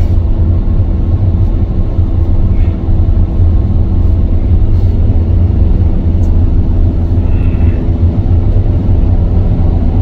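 Car driving at motorway speed: a steady, loud low rumble of road and engine noise.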